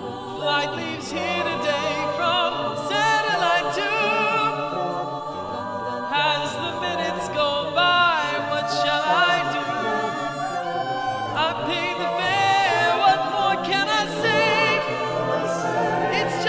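A small mixed choir of about nine voices singing a cappella, sustained chords with vibrato, the parts recorded separately and blended together into one virtual-choir track.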